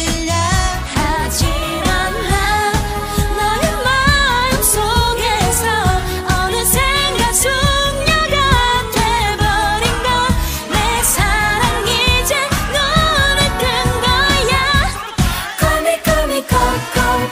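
A Korean pop song sung by female vocalists over a full backing track, with the sung melody running throughout.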